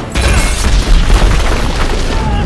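Film action sound effects: a deep explosion boom and rumble that starts suddenly just after a brief dip and is loudest about a second in.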